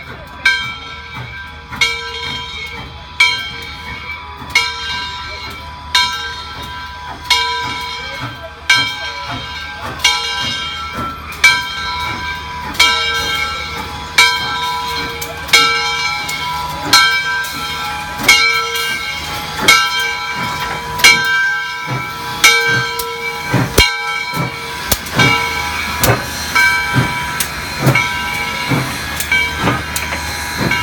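Southern Railway 630, a 2-8-0 steam locomotive, with its bell ringing evenly, about one stroke every second and a half, as the engine rolls up to the platform and stops. Steam hisses underneath.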